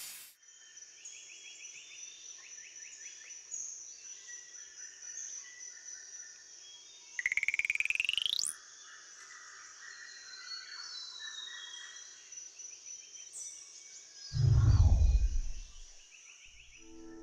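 A sound-designed nature soundscape: a steady high whine under short repeated chirps and animal calls. About seven seconds in comes a rising, buzzing glide, and near the end a loud, low, falling whoosh.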